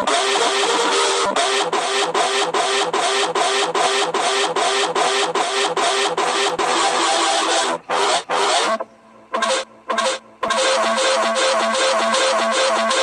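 Loud music with a fast, steady beat of about three strokes a second. It cuts out in short gaps about eight to ten seconds in, then picks up again.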